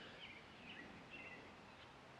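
Near silence with a few faint bird chirps.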